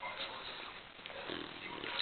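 English bulldog sniffing close at the camera's microphone, faint.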